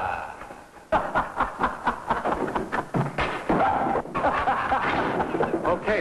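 Men laughing loudly in quick repeated pulses of voice, with a knock about a second in.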